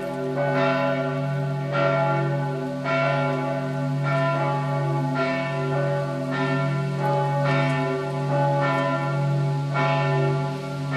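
The two middle bells of Strängnäs Cathedral, tuned to D and F, swinging and ringing together, with strikes coming about once a second over their steady low hum. This is helgmålsringning, the Saturday-evening ringing that marks the start of the Sunday holy day.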